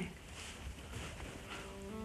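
Quiet low hum and hiss, with a faint held tone coming in near the end.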